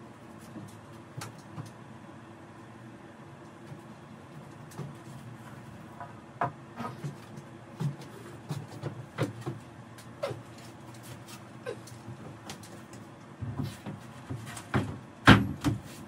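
Ash boards being handled in a woodshop: scattered light wooden knocks and clatter, with a couple of louder knocks near the end as a board is laid on the flattening sled.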